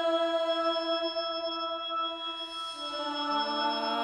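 Electric organ holding a sustained chord of steady tones in a slow ambient improvisation. New notes come in about three seconds in.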